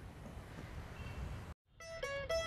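Faint, steady outdoor background noise with no distinct event. The sound cuts to silence about one and a half seconds in, and plucked-string music, mandolin-like, starts just before the end.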